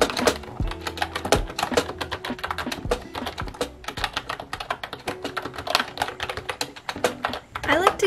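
Fast, continuous typing on a wireless computer keyboard with round, typewriter-style keycaps: a quick run of key clicks several times a second, with background music underneath.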